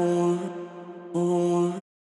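Layered vocal sample loops in G minor at 90 BPM playing back: a held sung vowel on one pitch, then a second held note about a second in. The second note stops abruptly near the end as playback stops.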